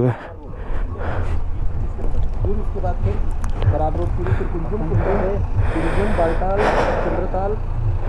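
Diesel engines of a tracked excavator and backhoe loaders running at work on rockfall across a mountain road: a steady low rumble, with people's voices over it.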